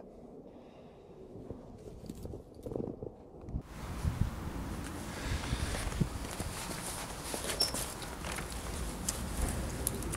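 Footsteps and rustling handling noise of a person moving about and settling down outdoors, with scattered soft knocks over a steady background hiss. The background changes suddenly about a third of the way in.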